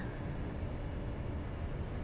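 Low, steady background noise, a faint hiss with a low rumble underneath, with no distinct event.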